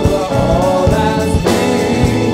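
Live neo-jazz band playing, with a sung vocal line over keyboards, guitar and drum kit.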